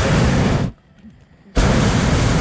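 Hot air balloon's twin propane burner firing overhead in two blasts, the first under a second long and the second starting about one and a half seconds in; each starts and cuts off suddenly.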